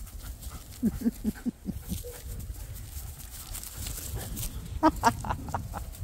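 A woman laughing in short bursts, once about a second in and again near the end.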